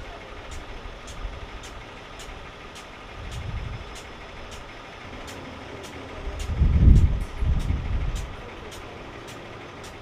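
Emergency vehicles idling: a low engine rumble that swells twice, most strongly about six to eight seconds in, over a regular high ticking about two and a half times a second.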